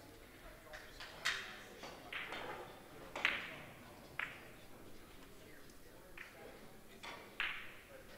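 Billiard balls clicking against each other on nearby tables: about six sharp, separate clacks at irregular intervals, each ringing briefly in the hall.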